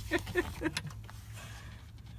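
Light clicks and knocks as the metal latches and lid of a motorhome's underbody storage box are handled, over a steady low hum.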